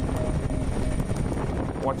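Helicopter hovering: steady rotor and engine noise with a constant hum, heard from inside the cabin.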